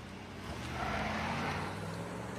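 A car engine running steadily, its level swelling slightly about half a second in.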